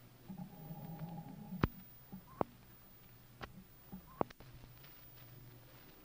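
A pause in an old broadcast recording: a faint low hum and a handful of sharp clicks, about four, spread over a few seconds.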